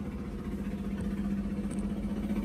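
Yanmar six-cylinder marine diesel engine idling steadily, a low even hum.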